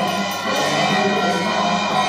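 Hindu devotional music for the aarti: voices singing together over steady ringing bells.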